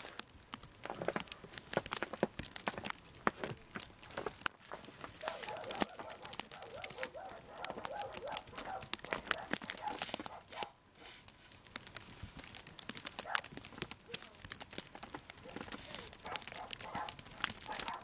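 Metal snow shovel scraping along a snow-covered sidewalk and snow crunching as it is scooped and thrown onto a snow bank, in a run of irregular scrapes, with footsteps in the snow.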